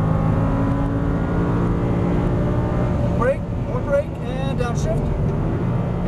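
Audi R8 V10 engine pulling hard under full throttle after an upshift, heard from inside the cabin. About three seconds in the engine note drops away as the driver lifts off to brake, and a voice is heard over it.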